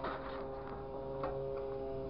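Grapple machine's engine and hydraulic system running with a steady droning hum as the cab swings, with a few light clicks, one clearer about a second in.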